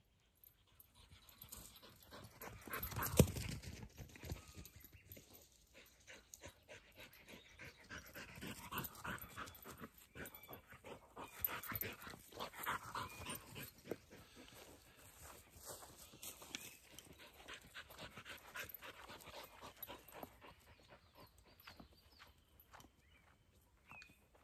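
A spaniel-type dog breathing and moving close by, among a run of short rustles and clicks of movement through grass. A single sharp knock about three seconds in is the loudest moment.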